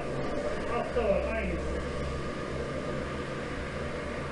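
A voice speaking briefly and indistinctly about a second in, over a steady low hum and hiss of workshop background noise.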